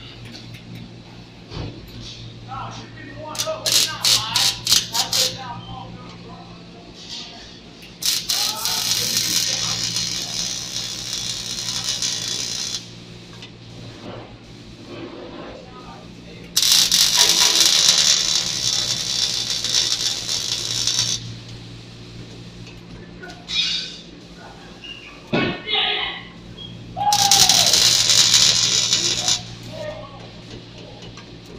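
Electric arc welding on steel go-kart frame plates: three runs of steady welding hiss, each several seconds long, with short crackling bursts around four seconds in. A steady low hum runs underneath.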